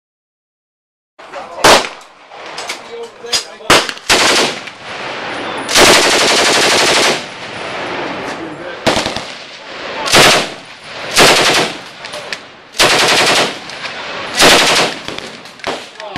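Browning Automatic Rifle firing .30-06 on full auto: a few single shots, then short bursts with pauses between them, and one longer burst of over a second about six seconds in. Fainter shots sound between the bursts.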